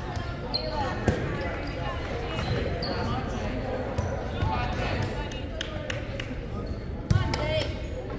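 A volleyball bouncing with sharp knocks on a hardwood gym floor, with a few short sneaker squeaks, over the steady chatter of players and spectators in a large reverberant gym.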